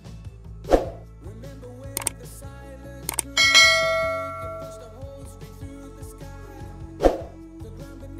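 Background music with a bell chime, a subscribe-button sound effect, that rings out about three and a half seconds in and fades over a second or so. Two dull thumps stand out, one about a second in and one near the end.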